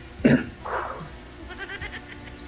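Laughter over a video call: a short sharp burst about a quarter-second in, a breathy burst after it, then quieter quick giggling pulses near the end.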